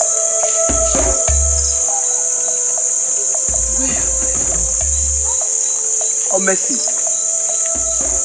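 Crickets chirping in a continuous high trill, with a steady lower hum beneath it.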